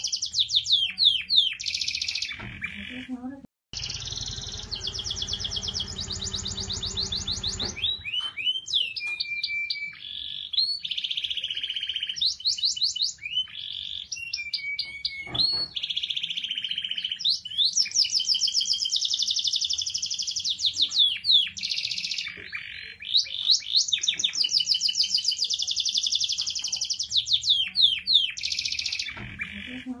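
Domestic canary singing a long song of rapid trills and gliding notes, with short pauses between phrases. There is a brief dropout a few seconds in, followed by a low rumble under the song for about four seconds.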